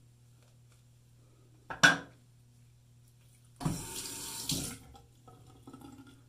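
A single sharp clack a little under two seconds in, then a bathroom sink tap running for about a second, with water splashing into the basin.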